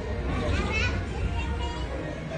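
Voices of several people, children among them, talking and calling out, one high voice rising in pitch just before a second in, over a steady deep rumble from the battle-scene soundtrack.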